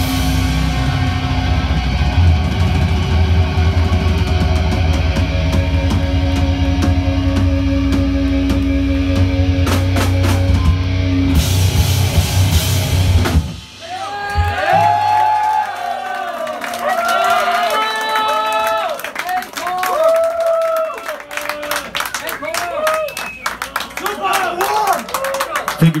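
Heavy metal band playing loud, with distorted electric guitars, bass and drums, ending the song abruptly about halfway through. Then a crowd cheering and shouting.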